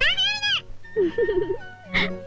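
A cat meowing: one long rising-and-falling meow at the start, then a lower, wavering call about a second in, over background music.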